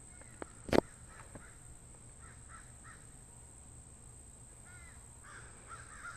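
Distant birds calling in short repeated notes, two runs of three or four calls, over a steady high insect drone. A sharp click comes just under a second in.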